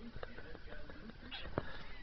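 A few faint scattered clicks and taps from a pet parrot moving about in its wire cage.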